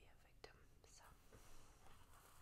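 Very faint whispering with a few small clicks, close to silence.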